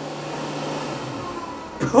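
A steady rushing noise with a low hum underneath, easing off near the end.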